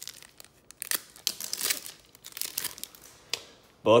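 Wrapper of a Garbage Pail Kids sticker-card pack being torn open and crinkled by gloved hands, in several quick crackling bursts as the cards are pulled out.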